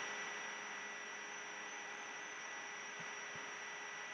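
Faint steady hiss with a thin, steady electrical hum: the background noise of the recording setup.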